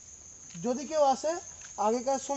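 A steady high-pitched drone of forest insects, with voices talking over it from about half a second in.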